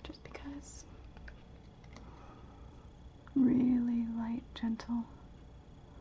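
A woman's soft voice makes a held hum-like note for about a second, starting halfway through, then two short ones. A few small clicks come early on and just after the long note.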